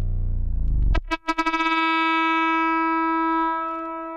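Ableton Live's Roar distortion feeding back into itself through a return-track send, giving a low, buzzing drone. About a second in it breaks off with a few stuttering clicks, then settles into a steady pitched tone with many overtones that fades away near the end.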